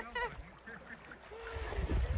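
Sea water splashing as a swimmer surfaces and thrashes near the end, with a short laugh right at the start and faint voices.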